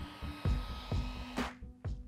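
Handheld hair dryer blowing, drying a painted canvas mat, under background music with a steady beat. The blowing cuts off about one and a half seconds in.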